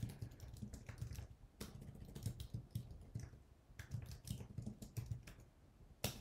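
Typing on a computer keyboard: an irregular run of quiet key clicks with brief pauses between bursts.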